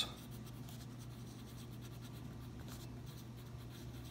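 Pen writing on a paper worksheet: faint, scattered scratching strokes over a steady low hum.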